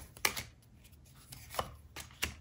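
Oracle cards being drawn by hand from a small deck and laid down on a table: a few sharp card snaps and taps. There are two close together near the start and more near the end.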